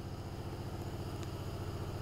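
A small motor running steadily: a low, even hum with a regular throb.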